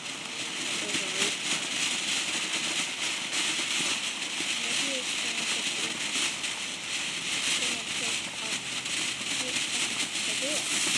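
Ground fountain firework spraying sparks with a steady loud hiss and dense crackling.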